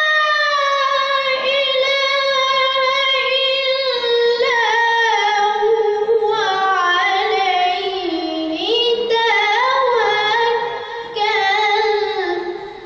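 A child reciting the Quran in melodic style, a high voice holding long ornamented notes that wind slowly lower in pitch, with a short break near the end.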